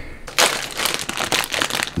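A dense crinkling, crackling noise that starts about half a second in and runs for over a second.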